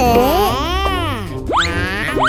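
Cartoon boing sound effects over background music: one long swoop up and down in pitch, then two quick upward swoops near the end.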